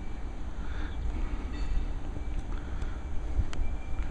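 Steady low rumble of outdoor background noise, with a sharp click about three and a half seconds in.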